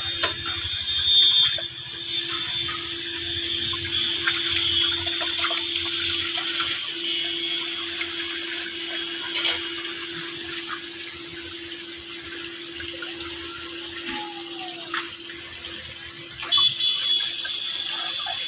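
Water from a hose gushing into a plastic basin in a steady rush, with a few brief splashes as hands grab fish in shallow water. A steady hum runs underneath.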